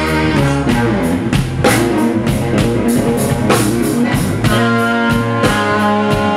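Live blues-rock band playing an instrumental passage: electric guitar over a drum kit keeping a steady beat.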